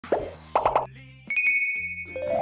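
Short title jingle with cartoon plop sound effects: one plop, then three quick plopping notes over a bass line, then a held, high ringing note.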